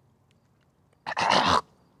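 A man coughing once: a single harsh burst of about half a second.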